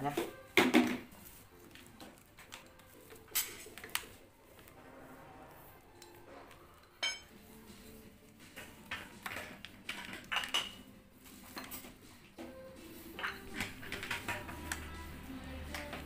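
Handling noise from an extension cord being wound by hand around a plastic pipe: the cord rubbing and scattered light knocks and clinks, with a sharper ringing clink about seven seconds in.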